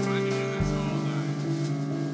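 Live rock band playing an instrumental passage: sustained electric guitar notes over drums and cymbals, with a low bass note coming in about half a second in.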